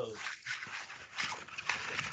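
Rustling and several soft knocks from a laptop or webcam being handled and moved.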